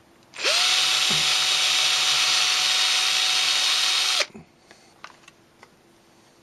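Handheld power drill spinning up quickly and drilling a hole into a miniature landscaped pod, running steadily at full speed for about four seconds before stopping abruptly.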